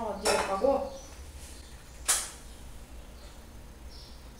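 Cookware being handled on a kitchen stove: a short creaking scrape in the first second, then one sharp clatter about two seconds in.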